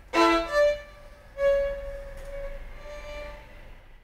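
A solo violin being bowed: a few short notes, then one long held note that slowly fades away.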